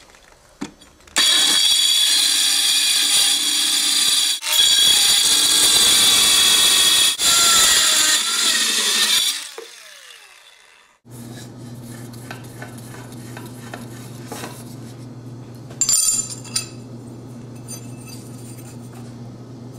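Handheld power saw with a small cutting disc slicing through a thin perforated steel construction bracket: a loud, high-pitched cutting screech for about eight seconds, broken twice briefly, then the motor winds down. After that comes a steady low hum with a few light clinks.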